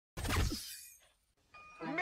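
A sudden crash-like noise with a falling tone, dying away within about a second. After a short silence, a voice and music begin near the end.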